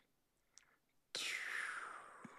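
A man blowing out a long breath into a close desk microphone: a breathy hiss, without voice, that starts about a second in and falls in pitch. A small click comes shortly before it.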